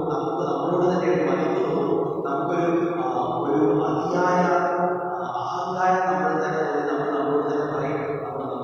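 A male voice chanting a sung liturgical prayer in long held notes on a slow, narrow melody, without the breaks of ordinary speech.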